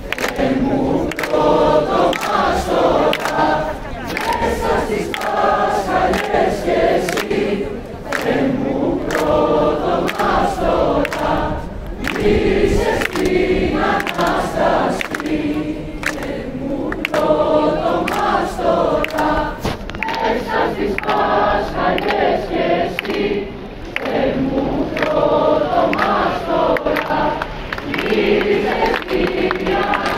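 A large crowd singing a song together, many voices in unison, phrase after phrase with short breaths between them.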